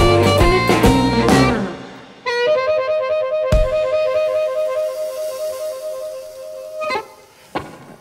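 A blues band of electric guitar, drums, bass and amplified harmonica plays the last bars of a song and stops about two seconds in. The amplified harmonica then holds a long final two-note chord, sliding up into pitch, for about four and a half seconds, and a sharp closing hit near the end cuts it off.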